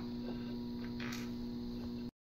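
Steady electrical hum of room equipment, with a few faint clicks from small plastic servo parts being handled.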